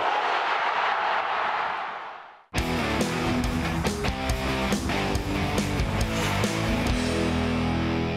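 A stadium crowd roars and fades out. About two and a half seconds in, an electric-guitar rock jingle starts abruptly and plays on.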